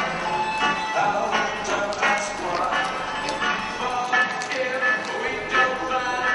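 Music playing with a steady beat and a melody, the soundtrack to a dressage ride.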